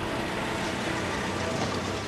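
Ford Mustang convertible driving along a road: steady engine and road noise.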